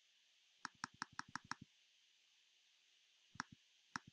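Computer mouse button clicking: a quick run of about six clicks half a second in, then a few more clicks near the end.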